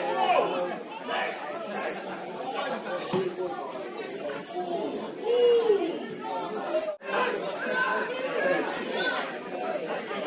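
Crowd chatter at a football match: several spectators and players talking and calling at once, with one louder call about five and a half seconds in. The sound drops out for an instant about seven seconds in.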